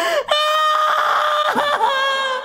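A woman's voice singing long, loud, high, steady notes into a microphone, breaking off briefly just after the start and again about one and a half seconds in.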